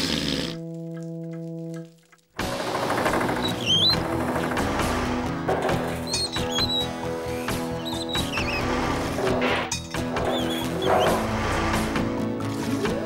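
A nose blown into a tissue: a short noisy blast with a held honking tone after it for about a second. Then lively background music with a steady beat starts about two seconds in.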